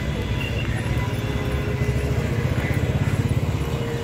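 A motorcycle engine running as the bike rides up close, its rumble pulsing and growing louder toward the end.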